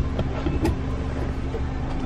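A car's engine idling, heard from inside the cabin as a steady low hum, with a couple of faint clicks.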